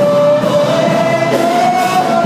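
Live gospel worship music: a lead voice holds one long sung note that slides slightly higher about half a second in, over band accompaniment.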